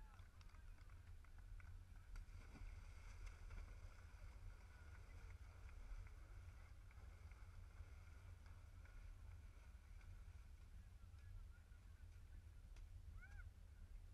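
Near silence: faint outdoor ambience over a steady low rumble, with a few faint distant calls near the end.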